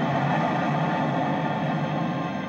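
Film score music holding steady on sustained tones, thickened by a rushing, hissing wash of noise.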